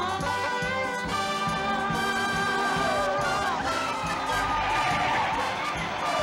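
A 1970s-style TV chase score led by brass, with tyres squealing in the second half as a car swerves.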